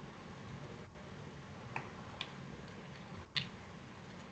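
Three short clicks over a faint, steady low hum of background noise, the last click near the end the loudest.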